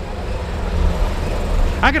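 Steady low street rumble on a handheld camera's microphone: outdoor traffic noise and wind buffeting, with no single clear event.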